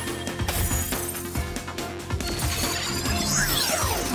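Upbeat cartoon transformation music with a steady beat, layered with sparkling magic sound effects. Sweeping swoops rise and fall in pitch near the end.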